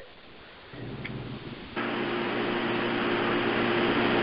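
A steady mechanical hum with a hiss over a telephone conference line, faint at first and louder from just under two seconds in: background noise from a participant's open line.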